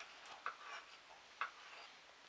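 Two light clicks of a metal spoon against a small bowl as potato starch is spooned out, about a second apart.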